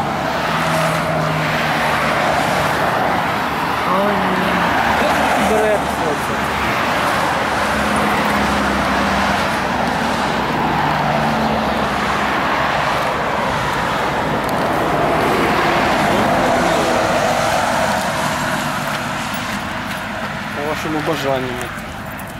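Road traffic passing on a highway: tyre and engine noise of vehicles going by, swelling and fading several times.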